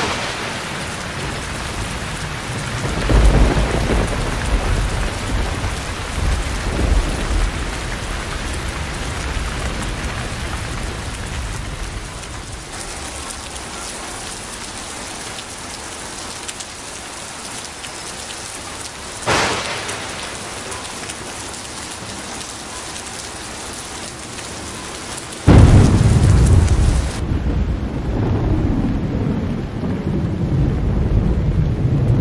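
Heavy rain pouring steadily, with thunder. Thunder rumbles a few seconds in, a sharp thunderclap comes about two-thirds through, and a loud low rumble of thunder starts suddenly near the end.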